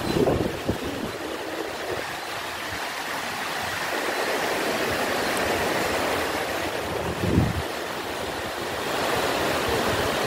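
Steady rushing of a shallow river running over rapids and stones below, with two brief low bumps on the microphone, one right at the start and one about seven seconds in.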